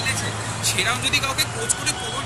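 Men's voices talking over a steady low hum of road traffic, with a couple of sharp clicks in the second half.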